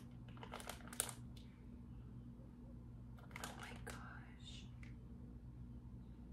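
A few short, faint crinkles of a clear plastic clamshell wax-melt pack being handled, around a second in and again about three and a half seconds in, over a steady low hum.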